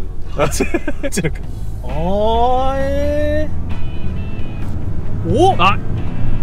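Steady low drone of the Toyota 86's engine and road noise, heard from inside the cabin while driving; the car is fitted with an HKS bolt-on turbo kit. Short vocal exclamations rise over it, the last one near the end.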